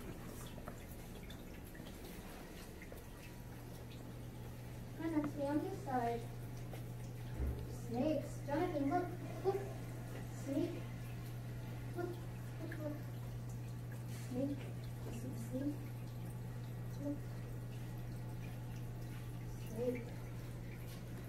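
Indistinct voices talking on and off in the background of a small room, over a steady low electrical hum and faint trickling of aquarium water.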